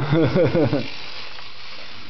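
A person's voice for under a second, then steady background hiss.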